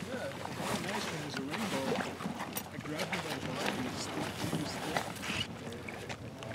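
Shallow lake water sloshing and splashing around a float tube and wading legs as a man steps into the tube, with indistinct talking over it.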